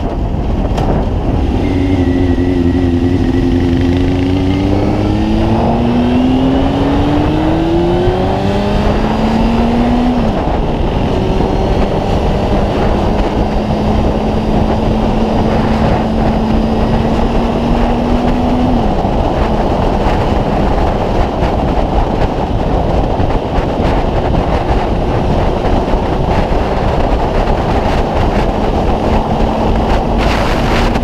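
Honda CB600F Hornet's inline-four engine accelerating through the gears: its pitch climbs, then drops at upshifts about ten and nineteen seconds in, before holding nearly steady at speed. Heavy wind noise on the microphone underneath.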